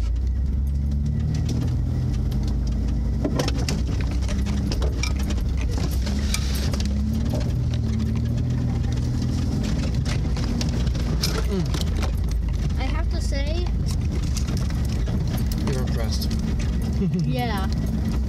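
Inside the cab of an off-road vehicle crawling along a rough trail: the engine runs steadily at low speed, its pitch wavering a little, with frequent rattles and knocks from the body and gear as it rocks over the ground.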